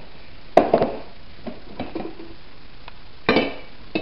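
Kitchen handling sounds: a sharp knock about half a second in, a few lighter taps, then a ringing clink of hard kitchenware a little past three seconds.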